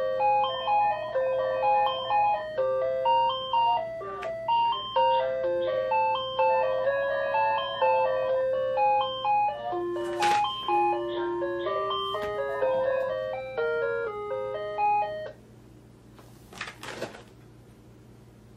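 An electronic melody of clear, steady chiming notes plays loudly for about fifteen seconds and then stops suddenly. A brief, faint rustle of plastic packaging follows near the end.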